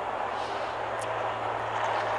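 NASCAR stock cars running on the track, heard as a steady, even noise through race broadcast audio.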